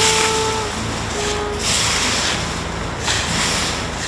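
A plastic-bristled broom sweeping dry fallen leaves across pavement: a loud, scratchy rustle that swells with each stroke.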